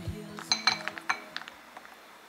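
A quick run of about seven light clinks, like glass or ceramic being tapped, starting about half a second in and growing fainter, while background music fades out.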